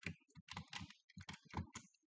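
Faint typing on a computer keyboard: a quick, uneven run of about a dozen keystrokes as the word "import" is typed into a code editor.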